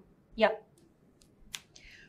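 A woman's short spoken "yeah", then quiet room tone with a few faint ticks and one sharp click about a second and a half in, followed by a brief soft hiss.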